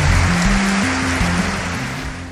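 A large crowd applauding, an even wash of clapping that eases off near the end, over background music with low held notes.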